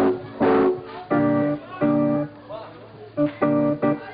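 Live music with guitar: about five short phrases of held, steady notes that start and stop abruptly, with brief gaps between them.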